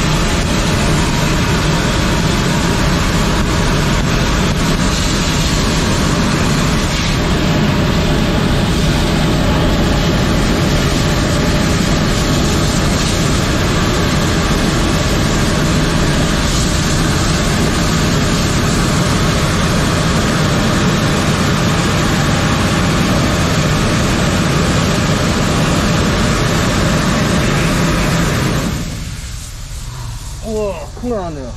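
High-pressure sewer jetter blasting water through a drain pipe: a loud, steady rush of spray over the drone of the jetter's pump. The sound drops away near the end.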